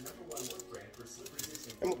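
Faint handling noise: light scattered clicks and crinkling of the plastic slow-cooker liner as the filled crock is lifted up close, with a woman starting to speak near the end.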